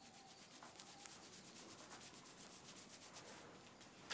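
Faint rubbing of a towel on hair as it is dried, in quick, even strokes that die away near the end.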